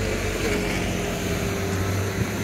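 Motor scooter engine running as it rides past close by, a steady hum whose pitch falls slightly.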